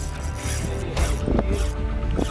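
Fishing reel working under the load of a hooked fish, mechanical clicking and gear noise, over a steady low rumble. The reel is an Ajiking Wahoo Plus.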